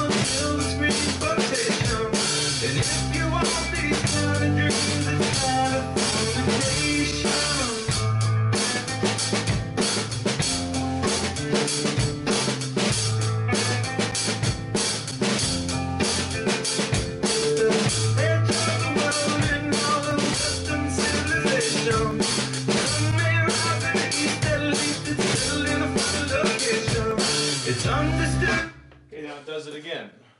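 Drum kit played live along with a recorded rock song with bass and guitar, a steady beat on hi-hat, snare and bass drum. The music and drumming stop abruptly about a second before the end.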